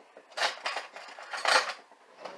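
Metal spoon scraping the last of the cream cheese off its crumpled foil wrapper, two short rustling scrapes about a second apart.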